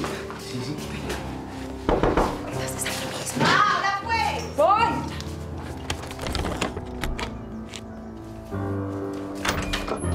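Knocking on a wooden door, several separate knocks over soft background music, with a short voice call in the middle.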